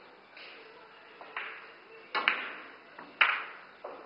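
Pool shot: the cue tip strikes the cue ball, then sharp clicks of billiard balls hitting each other and the rails as the object ball is pocketed. The two loudest clicks come about two and three seconds in.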